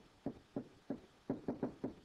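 A quick, irregular series of light taps from a stylus striking a tablet screen while handwriting a word, about eight to ten taps in two seconds.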